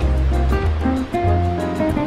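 Instrumental Brazilian jazz music: a deep bass line under held melodic notes, with a quick steady high percussion tick keeping the rhythm.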